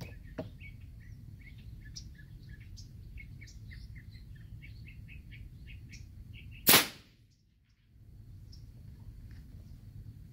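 A single loud shot from a custom .45-calibre big-bore dump-valve PCP air rifle, its chamber charged to about 800 psi and firing a lead slug, about two-thirds of the way in. Small birds chirp steadily throughout.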